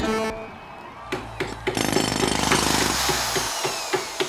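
Sound effects of a wrestling ring's wooden floor cracking and breaking apart. A few sharp cracks come first, then a rapid rattling crunch of splintering wood over a low rumble, with falling tones near the end.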